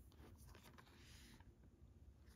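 Near silence, with a few faint clicks and rustles from a plastic Blu-ray case being handled.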